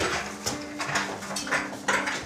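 Footsteps of two people hurrying up a staircase and onto the landing, sharp regular steps about two a second.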